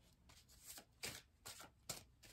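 Tarot cards being handled and laid out on a wooden tabletop: a few faint, short card flicks and taps.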